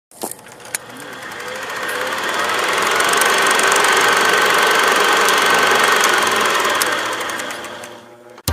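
Logo-intro sound effect: a dense rattling, rushing noise full of fast crackling clicks, with two sharp clicks in the first second, swelling to a peak in the middle and fading out near the end.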